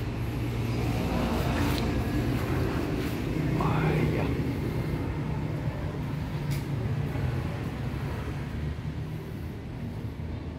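A steady low hum of background noise, with one short sound that rises and falls in pitch about four seconds in.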